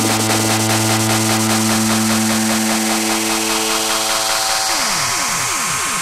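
Dubstep-style electronic dance music: a low, held note over a fast, dense, buzzing beat, breaking about five seconds in into a run of quick falling pitch sweeps.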